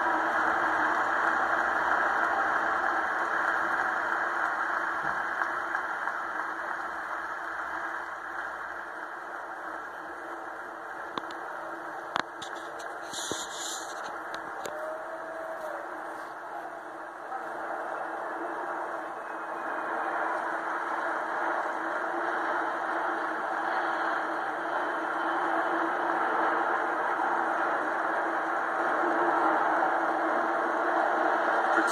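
Jet engine noise of the flypast aircraft, led by a C-17 Globemaster transport, heard through a television's speaker as a steady rumble that fades and then swells again in the second half.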